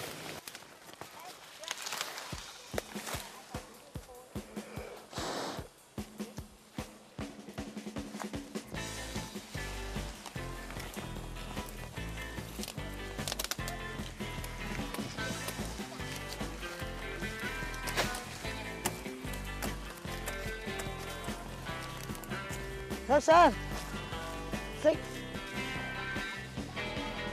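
Scattered rustling and snapping of sugarcane stalks and dry cane leaves as the cane is pulled and broken. About nine seconds in, background music with a steady beat comes in and carries through, with a brief swooping sound near the end.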